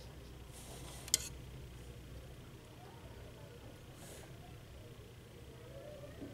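Quiet room with a steady low hum, and a watercolour brush stroking on paper: two short soft brushing sounds, one just before a second in and one about four seconds in. A single sharp click comes a little after one second.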